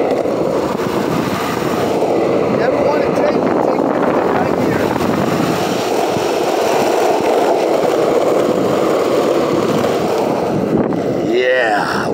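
Skateboard wheels rolling over asphalt: a steady, loud rolling rumble that holds without a break. A brief voice cuts in near the end.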